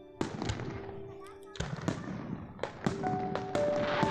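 Aerial fireworks bursting overhead: a string of sharp bangs, about eight in four seconds, unevenly spaced.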